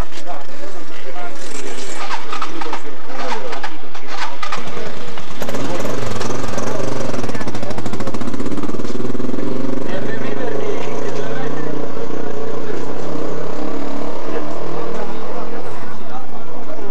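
People talking, with a motor engine starting to run steadily about four and a half seconds in and continuing under the voices. Several sharp clicks come before the engine.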